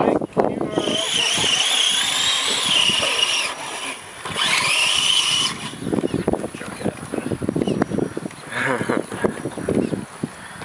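Electric motor of an RC rock crawler truck whining under load as it churns through a mud pit. The pitch wavers, breaks off briefly, then rises and holds. Voices follow in the second half.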